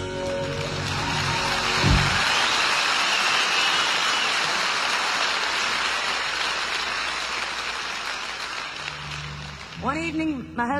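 Live concert audience applauding as the last notes of a song die away; the clapping holds steady, then slowly fades.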